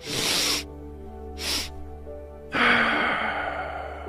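A man demonstrating the physiological sigh: a quick sharp inhale, a second shorter inhale about a second later, then a long exhale beginning about two and a half seconds in and fading away. Soft background music runs underneath.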